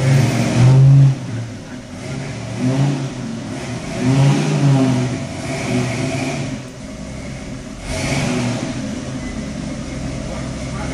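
1970 Ford Mustang Boss 302 V8 engine running, revved up and down in several short rises.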